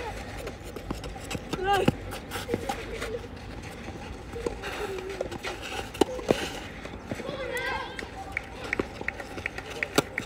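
Tennis rally on a clay court: sharp racket hits on the ball, the strongest about two seconds in and six seconds in, with lighter knocks and shuffling footsteps between them. High children's voices call out several times.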